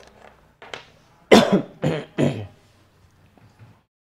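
A person coughing three times in quick succession, a little over a second in.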